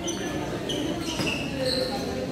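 Athletic shoes squeaking on an indoor sports-court floor as badminton players move and change direction, several short, high squeaks in quick succession. Crowd chatter runs underneath.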